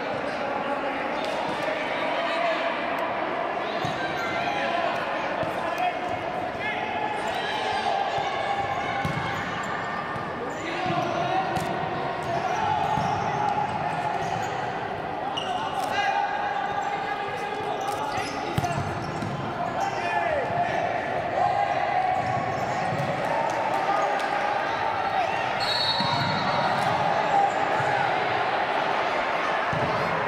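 Futsal play in a reverberant sports hall: the ball being kicked and bouncing on the wooden court, with players and spectators shouting indistinctly throughout.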